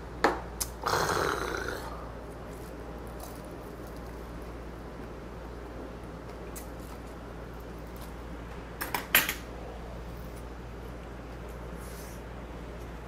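A shot glass is set down on the table with a sharp click, then a long breathy exhale of about a second after the shot of soju. Near the end comes a quick run of sharp clicks of chopsticks or dishes, over a steady low room hum.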